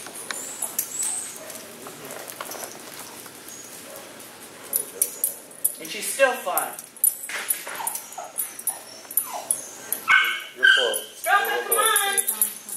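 A dog whining and yipping in short high-pitched calls, several times in the second half.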